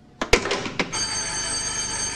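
A sharp clack of a telephone handset being put down, then about a second in a desk telephone's bell starts ringing steadily.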